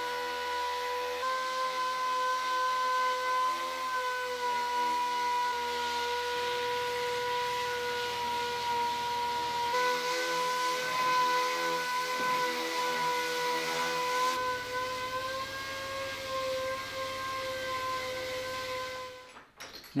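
Air-powered random orbital sander running on old wagon-gear wood: a steady high whine whose pitch wavers slightly as it works. It stops shortly before the end.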